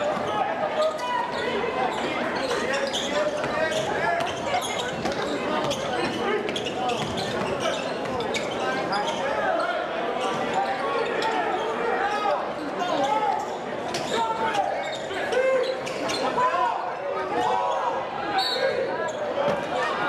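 A basketball being dribbled and bounced on a hardwood court during play, as short knocks under the steady chatter of a crowd of spectators.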